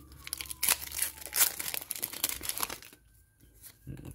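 A Pokémon Shining Fates booster pack's foil wrapper being torn open and crinkled by hand. There is a quick run of sharp rips and crackles over the first three seconds, then it goes quieter as the cards come out.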